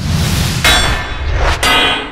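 Metallic clang sound effects for an animated logo reveal. A noisy hit comes at the start and a second clang about two-thirds of a second in. A third clang, a little after one and a half seconds, rings on with several tones as it fades.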